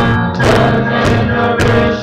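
Live worship band music: keyboard with singing voices over a steady beat of about two beats a second.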